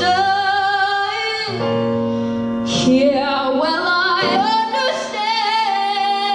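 Female vocalist singing a slow ballad live with electric keyboard accompaniment, holding long notes with vibrato over sustained keyboard chords.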